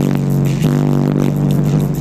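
Bass-heavy music played loud through a car audio system's pair of 10-inch Type R subwoofers in a D-slot ported box. A single low bass note is held steady throughout, with more notes joining above it about two-thirds of a second in.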